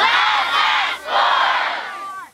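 A large group of children and adults shouting together in two loud bursts, a group cheer.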